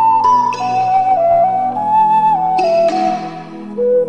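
AG triple ocarina, a three-chambered ceramic ocarina, playing a melody that moves in small steps between held notes, with a pure, flute-like tone. Under it runs an accompaniment of sustained low notes.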